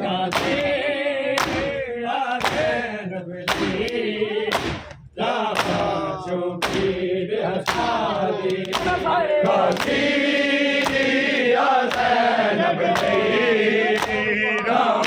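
Men's voices chanting a noha (lament) together, cut by the slaps of the crowd beating their chests in unison (matam), about one strike a second. The chanting breaks off briefly about five seconds in.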